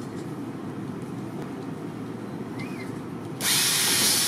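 A construction robot's power screwdriver driving a screw up into a ceiling board: a low steady hum, then about three and a half seconds in a loud whirring buzz as the driver starts turning.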